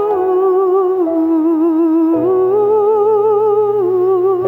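A female solo voice sings a slow Romanian devotional song (pricesnă), holding long notes with a wide vibrato. Sustained accompaniment chords lie underneath and change about two seconds in.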